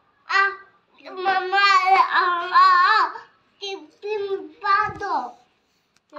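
A young child singing in a high voice: a short note, then a long wavering phrase from about a second in, then a few shorter notes ending on a falling slide.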